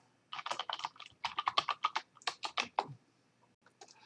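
Typing on a computer keyboard: a quick run of keystrokes lasting about two and a half seconds, then stopping, with a couple of faint clicks near the end.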